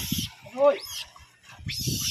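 A rhesus macaque gives one short coo call that rises and then falls in pitch, about half a second in. Noisy rustling comes just before it and again near the end.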